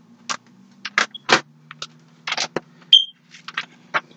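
Thin Bible pages being turned, a string of short papery rustles and flicks, with a brief high squeak about three seconds in. A steady low hum runs underneath.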